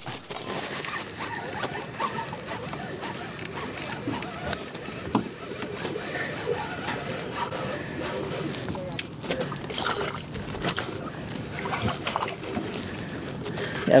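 Water sloshing and lapping around a kayak, with scattered small clicks and knocks from the fishing rod, reel and kayak gear while a hooked sockeye is played.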